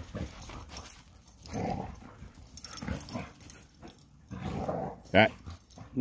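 Dogs making short vocal sounds, four or five separate ones spaced through the few seconds, while they play-wrestle; the last, just before the end, is the sharpest.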